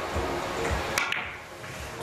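Sharp clicks about a second in as a billiard cue tip strikes the cue ball in a three-cushion carom shot, with the balls knocking together right after.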